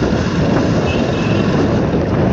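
Motorcycle riding along at road speed: steady rushing wind and road noise on the microphone, with no distinct engine note standing out.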